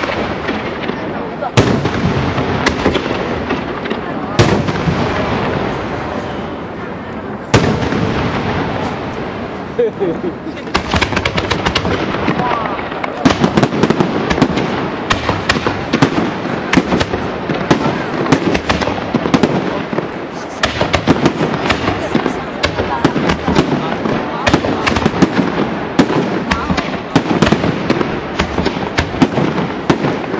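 Aerial firework shells bursting in a display: a few separate bangs, then from about ten seconds in a rapid, dense run of sharp bangs as many shells break at once, with people talking underneath.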